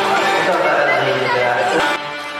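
Indistinct human voices, people talking, with no clear words.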